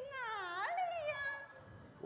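A woman's high-pitched, drawn-out coy vocal sound without words, its pitch dipping and then rising, trailing off after about a second and a half.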